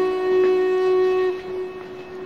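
Background music: a wind instrument holds one long note that fades away just over a second in.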